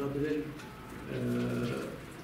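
A man's voice: a few words, then a long level hum-like hesitation sound held for most of a second in the second half.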